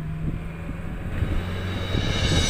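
Steady low hum and road noise of a moving vehicle, heard from inside the vehicle.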